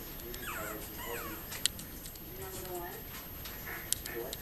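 Six-week-old yorkiepoo puppy whimpering: two high, falling whines in the first second or so. Two sharp clicks stand out, one in the middle and one near the end.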